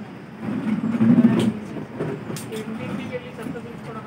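A crowd of people talking over one another, several voices at once, loudest about a second in.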